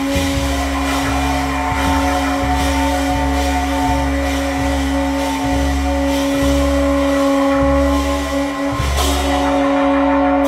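Live jazz quartet playing, heard as rough cell-phone audio: one long, unbroken held tone sustains over deep upright bass notes, with drum and cymbal strikes scattered through it and a sharper crash near the end.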